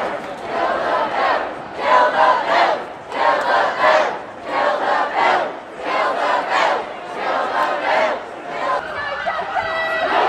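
Crowd of protesters chanting a short slogan in unison, the chant repeating in regular bursts about every second and a half.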